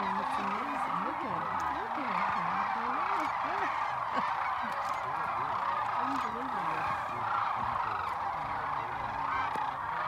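A large flock of sandhill cranes calling in flight overhead: many overlapping calls merge into a steady, dense chorus with no break.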